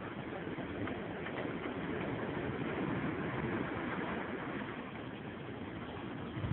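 Steady rushing of wind over the phone's microphone and the sea below, swelling slightly in the middle.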